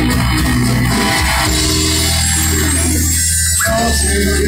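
Live rock band playing loud through a venue PA, heard from within the crowd: electric guitars and a drum kit.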